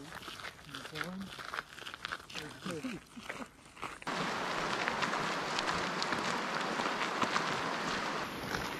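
Footsteps crunching on a gravel road. About halfway through, the sound cuts to a steady rush of flowing creek water, with footsteps still crunching over it.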